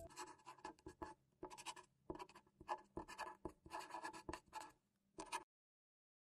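A marker writing on a smooth surface: a quick run of short, faint, scratchy strokes, one word-stroke after another.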